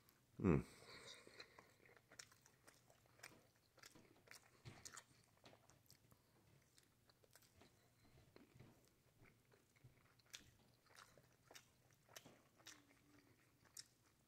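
A person chewing a mouthful of soft sausage, egg and cheese wrap close to the microphone: faint, irregular wet mouth clicks and smacks, after a short hummed 'mmm' about half a second in.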